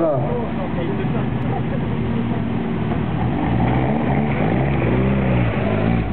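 Rally car engines running at low speed, with the revs rising and falling about halfway through as a car moves up through the control.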